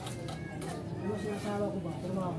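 Faint voices talking in the background, with no clear work sound standing out.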